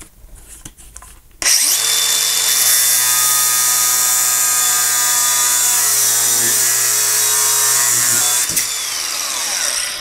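Cordless angle grinder with a cutting disc cutting through a steel M12 bolt to take its head off: a loud, steady whine with hiss that starts about a second and a half in, and drops in level near the end.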